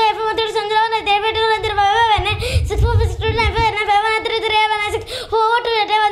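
A child's high-pitched voice rapidly reciting the digits of pi from memory, in a fast, nearly level chant with hardly a break.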